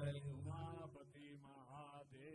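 Voices chanting Hindu devotional calls of '… ki Jai', with a steady low hum underneath.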